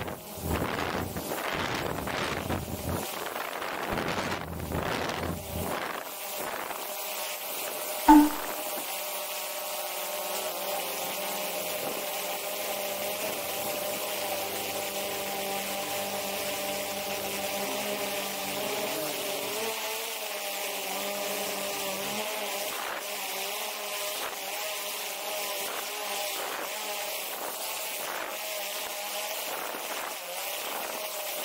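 Wind buffeting the microphone for the first several seconds, then, after a sharp click about eight seconds in, the steady, slightly wavering buzz-whine of a quadcopter drone's propellers in flight.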